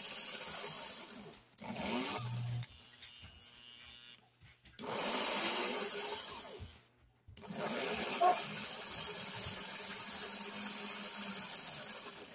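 Open-frame electric motor of a 1950s Lionel locomotive driving its gears and wheels. It runs in four short stretches, stopping and restarting three times with brief pauses. It is freshly cleaned and oiled and runs pretty good now.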